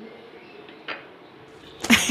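Quiet kitchen with one light knock about a second in, then a loud, ringing clatter near the end as a glass pot lid with a metal rim is picked up off the counter.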